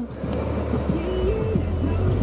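BMW M5 engine running with a steady low rumble under throttle while the car fails to get up a snow-covered driveway into the garage, its wheels losing traction in the snow.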